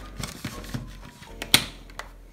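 A single sharp click about one and a half seconds in, amid faint rustling and small knocks as a phone is carried, with a weaker click near the end.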